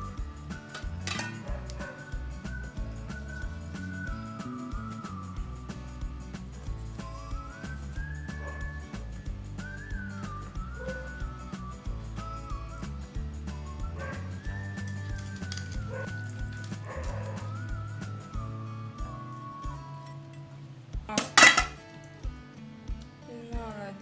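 Background music with a single wavering melody line over steady low notes, and small clinks of a knife and utensils against a plastic cutting board. One sharp, loud clack comes near the end and is the loudest sound.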